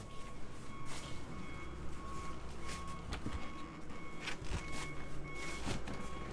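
Low steady hum inside a boat cabin, with faint high-pitched beeps that come and go and a few soft knocks as the head's door is pushed open.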